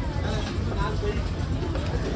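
Indistinct background voices over a steady low rumble, with no clear chopping strike.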